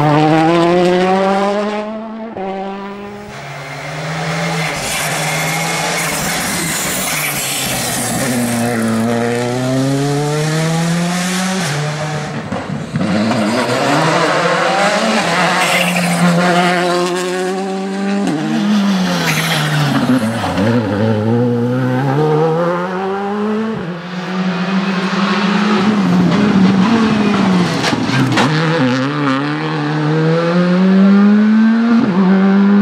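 Rally cars' 1.6-litre turbocharged four-cylinder engines driven hard on a tarmac stage: the engine note climbs in pitch and drops back at each upshift, over and over, then falls away and builds again as the cars brake and accelerate out of corners.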